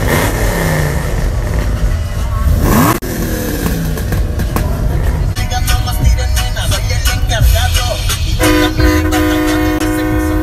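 Car engines revving hard during burnouts, with a deep steady engine rumble throughout. Near the end a car horn is held in one long blast of about two seconds.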